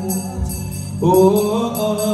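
Church worship music: jingling percussion keeping a steady beat, about four strokes a second, over a low sustained accompaniment. A singing voice comes in about a second in, gliding up onto a held note.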